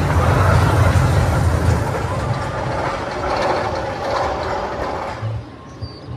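Roller coaster train running on its track: a heavy rumble with mechanical rattling, loudest in the first two seconds, easing off and dropping away suddenly about five seconds in.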